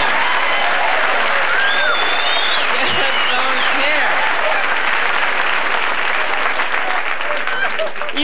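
Audience laughing and applauding together, with laughs and whoops rising above the clapping in the first half; it thins out a little near the end.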